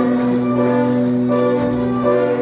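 Orchestral accompaniment from a stage musical: a held, sustained chord that shifts to new notes partway through, with a bell-like tone.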